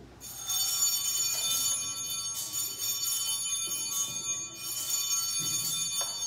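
Sanctus (altar) bells, a cluster of small bells shaken several times over, their high ringing tones overlapping. They are rung at the elevation of the host after the words of consecration.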